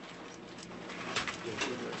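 Wall telephone being hung up: two sharp clicks of the handset and hook switch about a second in, over faint room noise.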